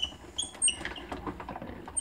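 A Sizzix Big Shot die-cutting and embossing machine being hand-cranked, its platform and thick 3D embossing folder feeding back through the rollers. It gives a run of short, high squeaks and light clicks, with most of the squeaks in the first second.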